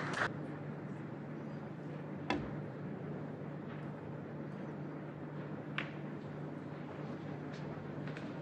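Two sharp clicks of snooker balls being struck, one about two seconds in and one near six seconds, over a steady low hum. A brief broadcast transition whoosh sounds right at the start.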